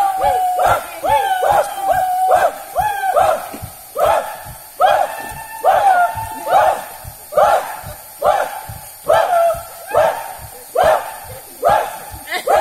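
Group of war-tribe performers chanting rhythmic shouted calls: a short rising-and-falling cry repeated a little faster than once a second, with low thumps between the calls.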